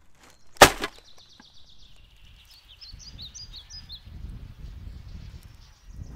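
A sharp knock about half a second in, then a songbird singing thin, high chirping notes for about three seconds over a faint low outdoor rumble.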